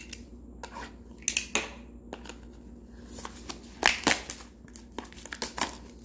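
Plastic shrink-wrap being slit with a box cutter and pulled off a cardboard trading-card box: scattered crinkling and short clicks, loudest about four seconds in.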